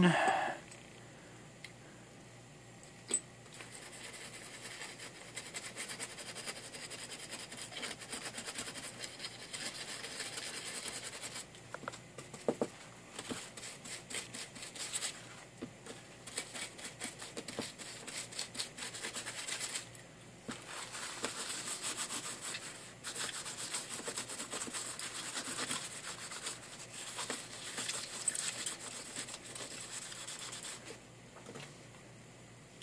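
Paper tissue rubbed and scrubbed over a printed circuit board in scratchy stretches with short breaks, cleaning the board after soldering. A single sharp click comes about three seconds in.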